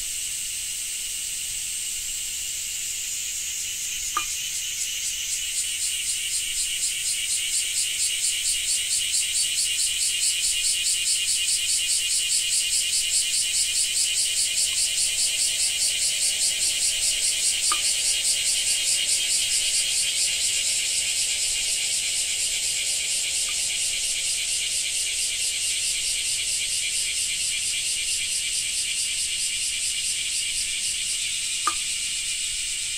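Cicadas calling: a loud, rapidly pulsing, high-pitched buzz that swells over the first several seconds, holds, then eases off slightly toward the end.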